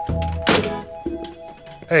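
A pay phone handset hung up on its metal hook with a single sharp thunk about half a second in, over a short music cue.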